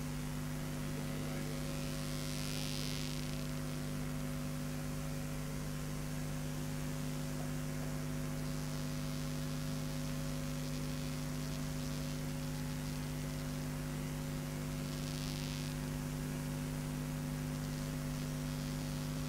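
Steady electrical mains hum with a constant background hiss, no speech; two brief soft hisses come through, one about two and a half seconds in and one near fifteen seconds.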